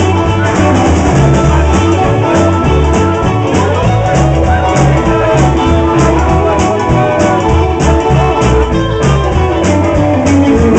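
A live rockabilly band playing loud: electric guitars over bass and a steady drum beat.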